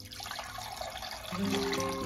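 Freshly pressed green juice pouring in a steady stream from a juicer's opened spout into a glass measuring jug. Acoustic guitar music comes in over it about halfway through.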